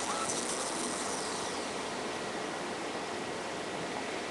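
Steady, even hiss of room noise picked up by a webcam microphone.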